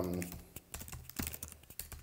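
Computer keyboard keys clicking in a quick, irregular run of keystrokes as code is typed.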